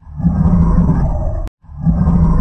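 Deep, growling monster roar for Venom's attack. It cuts off with a click about one and a half seconds in, and the identical roar starts again straight after, as a looped clip.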